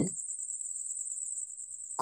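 A steady, high-pitched, rapidly pulsing tone, like a cricket's trill, running on its own between spoken phrases.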